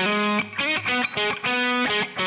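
Overdriven electric guitar played through a BOSS GT-5 multi-effects unit on its Blues Driver overdrive model, reportedly an analog circuit. A lead phrase of short picked single notes, with one note held for most of a second in the second half.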